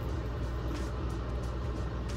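A steady low hum throughout, with faint soft ticks a few times a second from a canister of Comet powder cleanser being shaken over a toilet bowl.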